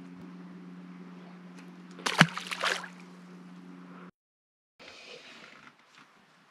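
Steady low hum of a boat's trolling motor, with a sharp knock and a short splash about two seconds in. The sound cuts off suddenly about four seconds in, followed by faint hiss.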